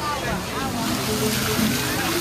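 Busy water-park ambience: a crowd of voices, children included, over running and splashing water, with background music.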